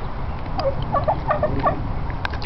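A bird calling: a rapid run of five or six short notes lasting about a second, over a steady low rumble.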